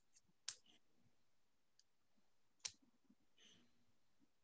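Near silence broken by a few small sharp clicks, two of them louder, about half a second in and just past the middle.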